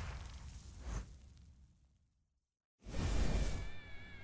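A whoosh-style transition sound effect fades out, with a short hit about a second in. Then comes a second and a half of dead silence, and a new sound begins near three seconds in, carrying a few held tones.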